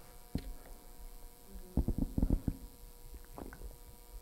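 A man drinking from a bottle close to a clip-on microphone: a few short, low gulping and swallowing sounds, clustered about two seconds in, over a faint steady hum.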